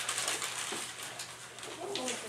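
Paper rustling and crinkling as a crumpled sheet is handled, loudest in the first second, with faint murmuring voices near the end.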